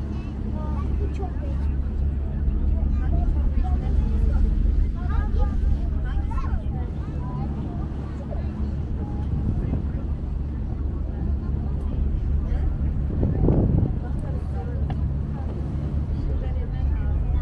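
Passenger ferry's engine giving a steady low drone, with people talking indistinctly in the background. A brief louder noise about 13 seconds in.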